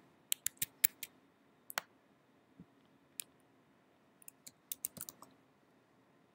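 Computer keyboard keystrokes and mouse clicks: a quick run of four clicks in the first second, a few scattered ones after, and a quick cluster near the end.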